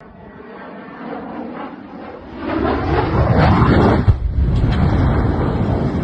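Jet engine of an M-346 Bielik trainer growing louder as it comes in low over the runway, then a sudden bang about four seconds in, followed by heavy continuing noise as the aircraft crashes and bursts into flames.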